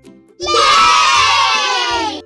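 A group of children cheering "yay!" together, starting about half a second in and holding for about a second and a half, the pitch falling slightly as it fades.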